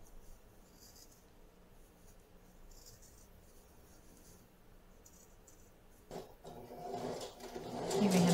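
Faint rustling and cutting of fabric with pinking shears along a neckline seam allowance, with a few soft scratchy snips. A louder noise builds over the last two seconds.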